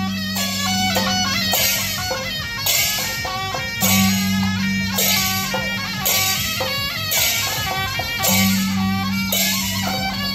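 Suona (Chinese double-reed horn) playing a reedy folk melody over cymbal crashes about once a second, with a low held note coming and going underneath: traditional Taiwanese processional music.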